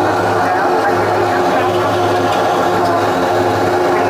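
Turboprop airliner's engines and propellers droning steadily, heard from inside the cabin as the plane rolls along the runway after landing. The drone holds several steady tones.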